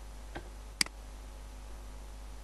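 Two computer mouse clicks, a faint one and then a sharp, louder one just under a second in, over a steady low hum.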